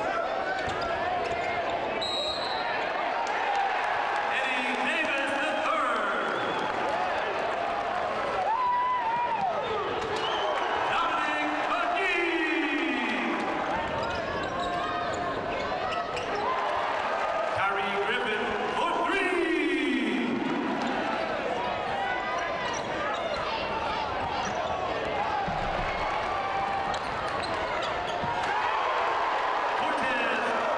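Basketball bouncing on a hardwood court during live play, over continuous arena noise with voices.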